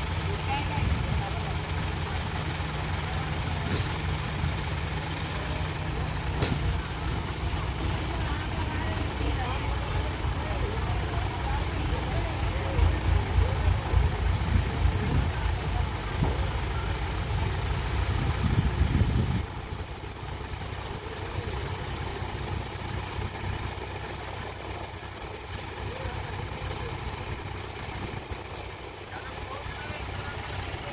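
Diesel engine of a hydra mobile crane working under load as it lifts an overturned truck, a steady low drone. About halfway through it grows louder, then drops suddenly to a quieter, lower run about two-thirds of the way through.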